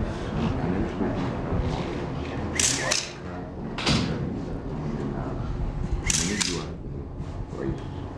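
Indistinct chatter of several overlapping voices in a room. Three short hissing bursts of noise come at about two and a half, four and six seconds in.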